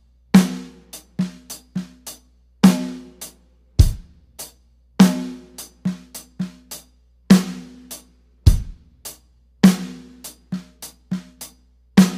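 A Dixon drum kit with Istanbul Agop cymbals playing a slow 16th-note snare groove. Hard snare backbeats land about every two seconds, with the bass drum about once every four to five seconds and hi-hat and soft ghost-note snare strokes in between. The left hand plays the offbeat notes as quiet ghost notes, which keeps it low so it doesn't strike the right hand.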